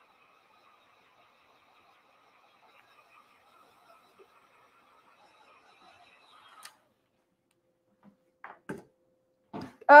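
Heat gun running with a faint, steady whine from its fan as it heat-sets stencilled fabric, switched off with a sharp click about two-thirds of the way in. A few small knocks follow near the end.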